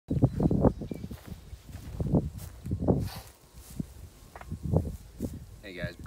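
Footsteps and rustling on dry grass as a person walks up and sits down on a metal stool: a handful of irregular dull thuds. A man's voice starts just before the end.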